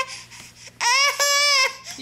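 A baby giving one long, high-pitched whining cry, about a second long, after a short quiet spell.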